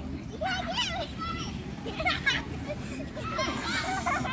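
Young children's high-pitched shouts and squeals while running about at play, in three short bursts, over a steady low background rumble.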